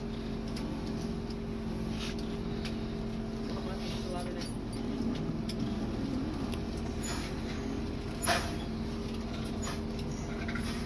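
A large bus's engine idling steadily, heard from inside the driver's cab, with a sharp click about eight seconds in.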